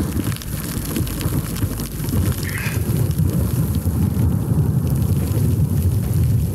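Heavy rain pattering on a rain-jacket hood close to the microphone during a thunderstorm, with a steady low rumble under it.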